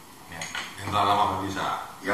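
Men's voices talking in a small room, with a light clink of tableware or a drink container near the start.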